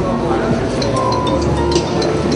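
Background music with the indistinct chatter of a seated audience, and several light clinks.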